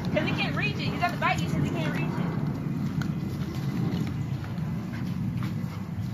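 A high-pitched voice calls out in short rising and falling cries during the first second and a half, over a steady low rumble.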